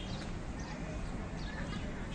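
Birds chirping in short high calls over a steady low rumble of outdoor background noise.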